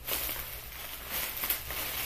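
Plastic bubble wrap crinkling and rustling as a package is unwrapped by hand, with a sharp crackle about one and a half seconds in.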